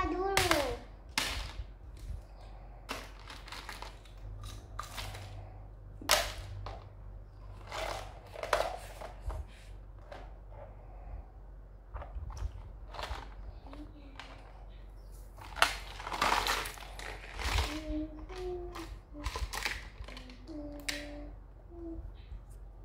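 Small plastic toy pieces and a plastic toy case clicking and clattering as they are handled and set down on a table, with one sharp click about two-thirds of the way through. A child's short vocal sounds come in near the end.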